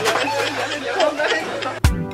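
Several voices talking over one another in a jumble. Near the end, background music with a steady beat cuts in suddenly.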